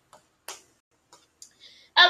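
A few quiet, scattered clicks and taps from handling a pen and a plush puppet, the sharpest about half a second in, with a brief soft rustle near the end.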